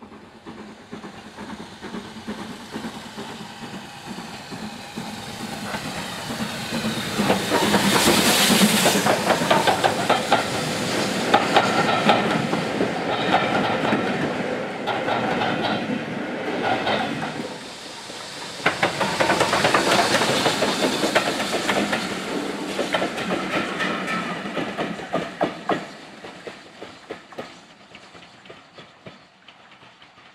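A steam locomotive hauling a train of passenger coaches approaches and passes close by. The sound builds steadily to a loud peak, with a second loud stretch as the coaches roll past. It then fades away as a string of wheel clicks over the rail joints.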